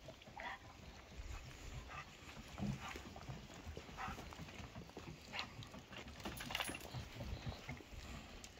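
A search dog sniffing in short bursts while its paws and its handler's shoes tread on a wooden porch deck, with scattered low knocks from the boards.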